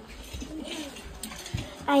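A talking baby doll's faint, cooing baby voice, with a soft low knock about one and a half seconds in.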